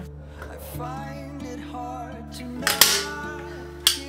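Background instrumental music, with two sharp clacks of a manual hand staple gun firing, the louder one a little under three seconds in and a second one just before the end.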